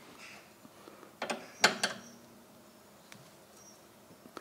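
Open-end wrench on the flats of a rack-and-pinion steering tie rod, turned to adjust the front wheel's toe: a few sharp metallic clicks close together between about one and two seconds in.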